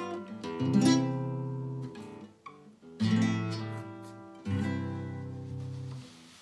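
Classical guitar playing a few chords, each a low bass note picked with the strings above it and left ringing as it dies away, with fresh attacks near the start, at about 3 s and at about 4.5 s. These are the G major and G7 chords of the exercise.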